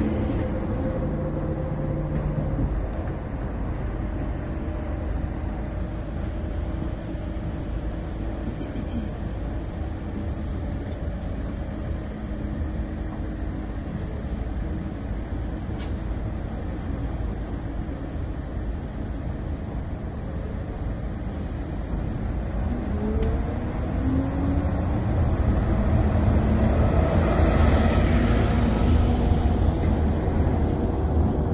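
Inside a moving city bus: steady engine rumble and road noise, growing louder over the last few seconds.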